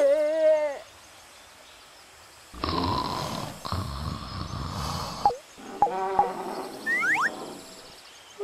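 Cartoon dinosaur voice effects: a crying wail that ends within the first second, then after a pause a rough, noisy growling sound lasting about three seconds, then a short pitched cry with quick sliding squeaks near the end.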